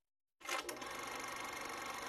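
Film camera running after the call to roll camera: a steady, fast mechanical clatter that starts about half a second in.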